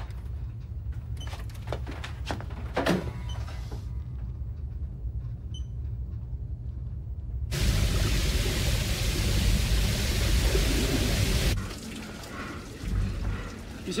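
Low, steady submarine rumble with a few sharp knocks. About seven and a half seconds in, a loud rush of water and bubbles starts suddenly, lasts about four seconds, then drops back to the rumble with a couple of thumps.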